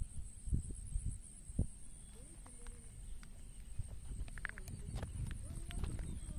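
Footsteps on grass and bare rock, with a few soft thumps early on and lighter clicks later, over a steady high-pitched drone.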